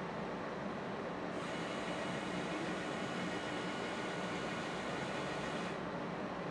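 Motor drive of an automated bottle measurement machine moving its bottle platter down, a steady whine of several tones that starts about a second in and cuts off just before the end, over a constant machine hiss.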